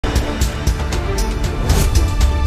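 News bulletin intro theme music with heavy bass, held tones and a steady beat of about four strokes a second.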